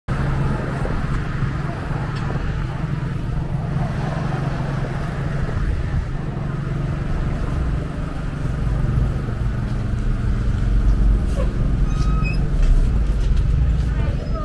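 City street traffic noise: a steady low rumble of road traffic.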